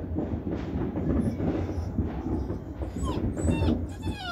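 Continuous rumbling and crackling of a heavy fireworks barrage, with a few short, falling whines from four-week-old Dobermann puppies about three seconds in.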